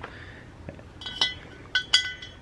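Steel hitch lock clinking against square steel tubing as it is pushed into a freshly drilled hole, a tight fit. A few sharp metallic clinks with short ringing come in the second half.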